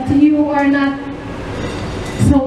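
A woman's voice holding a long, steady, drawn-out note: it rises briefly in pitch at the start, then holds flat for about a second before fading, like a sung or chanted line.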